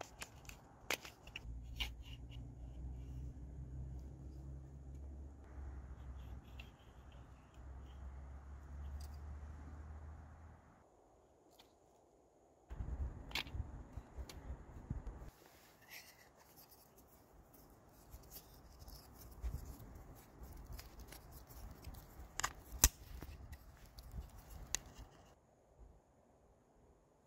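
Faint handling noises from a wooden bucksaw frame and its paracord tensioning cord: scattered small clicks and rubbing as it is held and turned in the hands, over a low steady rumble during the first ten seconds or so.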